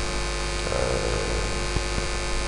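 Steady electrical mains hum carried through the microphone and sound system, a constant buzzing drone made of many even tones stacked together.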